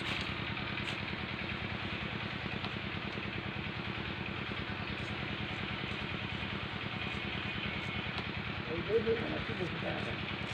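An engine running steadily, with an even, fast-pulsing sound. A person's voice is heard briefly near the end.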